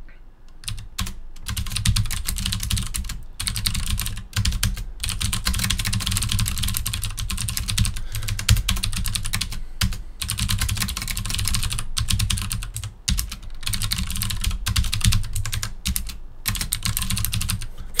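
Typing on a computer keyboard: a fast, continuous run of key clicks with a few brief pauses.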